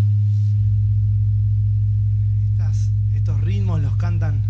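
A loud, steady low drone from the band's amplified sound, one unchanging tone held without a break, with a man's voice faintly heard near the end.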